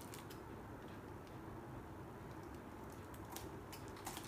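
Scissors cutting into a thin plastic bag: a few faint clicks and snips just after the start and again near the end, with quiet room tone between.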